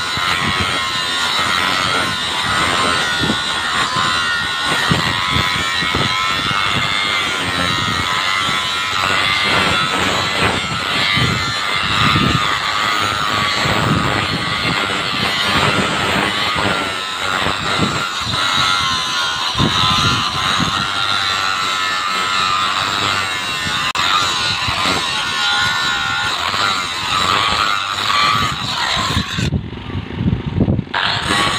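Handheld angle grinder with an abrasive disc grinding excess weld metal off a steel railway switch tongue rail: a steady, high whine that wavers as the disc is pressed into the rail. Near the end the high whine briefly drops away as the disc comes off the rail.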